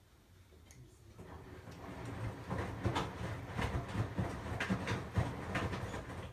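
Cat crunching dry biscuits from a plastic bowl, with irregular crackling chews and kibble clicking against the bowl, getting louder a second or two in.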